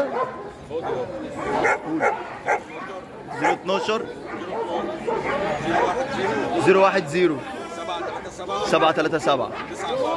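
Voices and chatter, with dog barking mixed in among them.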